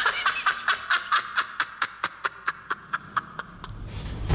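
A man laughing hard, a long string of quick 'ha' bursts that gradually slow and fade away. A low rumble comes in near the end.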